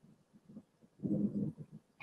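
A pause with low room tone, broken about a second in by one brief, low murmur of a person's voice, half a second long.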